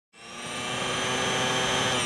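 Sound effect of an electric power tool: the motor spins up just after the start and runs with a steady whine.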